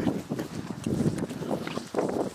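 Running footsteps on grass: an uneven series of dull footfalls as people run across a field, with the handheld microphone jostling.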